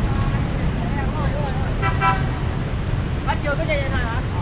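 Steady city traffic rumble, with a vehicle horn giving two short toots about two seconds in.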